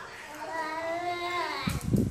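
A high, sing-song voice holds one note for about a second and a half, rising slightly and dropping at the end. Near the end come loud low thumps and rumbling as bodies move on the floor mat.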